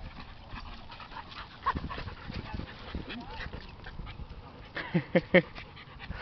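Dogs at play: a few faint yips, then a quick run of about four short, loud barks near the end.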